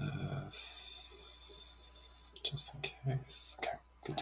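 A person's low, indistinct voice, muttered words with sharp hissing sounds, including one long hiss of about two seconds early on, over a faint steady hum.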